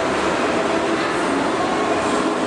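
Steady, even hiss and rumble of a train station around a standing steam locomotive replica.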